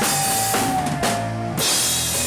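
Heavy rock band playing live, heard from beside the drum kit so the drums are loud in the mix. A held note sags slightly in pitch over the first second and a half, the highs thin out for a moment, then drums and cymbals crash back in near the end.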